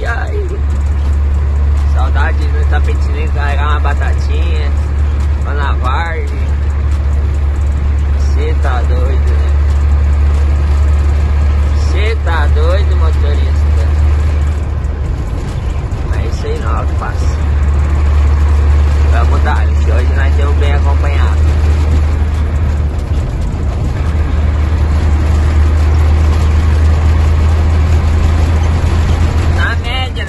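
A heavy diesel truck's engine droning steadily, as heard inside the cab while driving. The drone eases off briefly about halfway through and again a few seconds later, with short bits of voice coming and going over it.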